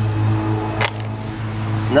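A steady low hum with faint higher tones underneath, and a single sharp clink just under a second in as lumps of charcoal in a plastic bucket are shifted by hand.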